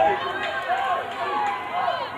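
Speech: a man's voice talking, the match commentary of a football broadcast.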